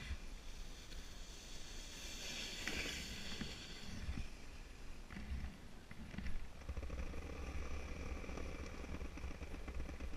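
Sled sliding down a packed-snow slope: a rough scraping hiss of the sled over the snow, strongest about two to four seconds in, over a low rumble of wind on the microphone.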